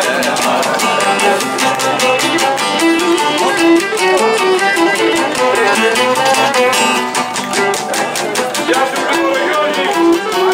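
Cretan lyra playing a bowed melody over two Cretan laouta strumming a fast, steady rhythm: live Cretan folk music.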